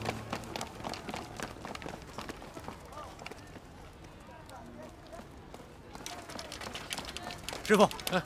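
A group of soldiers running on foot, a quick patter of many footsteps that thins out and fades after about three seconds, with faint voices in the background. A man speaks near the end.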